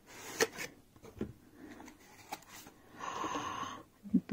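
A cardboard perfume box being handled as the glass bottle is taken out of it: a few light clicks and taps, then a longer rustling scrape near the end.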